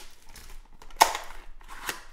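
Cardboard trading-card box being pulled open by hand: a sharp snap of cardboard about a second in, a second, smaller snap near the end, and light rustling between.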